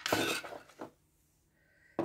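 Handling noise as a small gel polish bottle is picked up off a wooden table: a short rustling clatter, then a second, briefer knock just under a second later.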